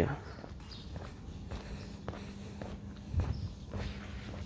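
Footsteps of a person walking at a steady pace on interlocking brick pavers, about two steps a second, with a faint steady hum underneath.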